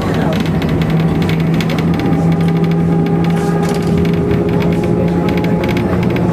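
Electric tram running, heard from inside the car: a steady low hum with continual clicking and rattling from the wheels on the rails and the car body.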